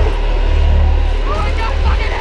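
A loud, steady, deep low rumble, with a man's wordless cries rising and falling over it from about a second in.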